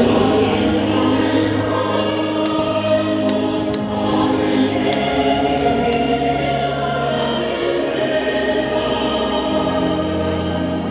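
A choir singing a slow sacred hymn, with long held notes.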